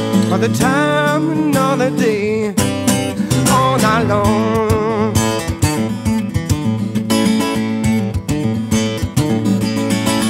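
Live acoustic song: a man's voice singing held, gliding notes over a strummed Lâg steel-string acoustic guitar in the first few seconds, then the guitar strumming on with a regular rhythm, with little or no voice.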